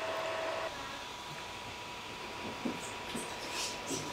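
Creality Ender-3 V2 3D printer running, with a faint steady whine that steps up to a higher pitch under a second in, over a low even hum.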